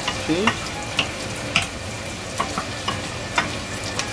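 Meat, onion and garlic sizzling in oil in a frying pan while a wooden spatula stirs them, with short knocks of the spatula against the pan every half second or so.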